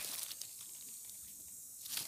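Faint splashing and light crackles of shallow pond water, as a small fish is let go by hand, near the start and again near the end, over a steady high hiss.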